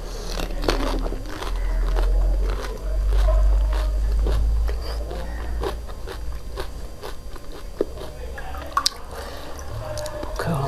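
Close-miked crunching and chewing of a pani puri, its crisp hollow shell cracking and squishing with the spiced water in the mouth. It is loudest in the first few seconds, and there are a few sharp clicks near the end.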